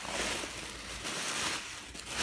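Tissue paper rustling and crinkling as hands pull it back from a folded jacket, a continuous papery noise.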